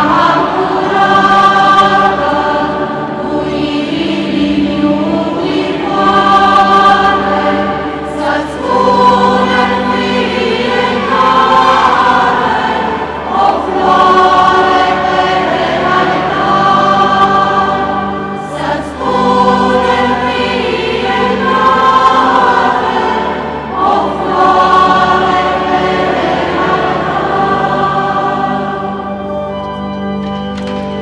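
Church choir singing a hymn in phrases of about two seconds each, over a steady low held accompanying note; the singing eases off near the end.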